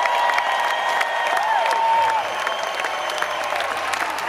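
Concert audience clapping and cheering, with a few long calls rising and falling in pitch above the dense clapping.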